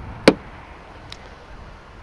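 A single sharp click a moment in, then a much fainter tick about a second later, over a low, steady background rumble.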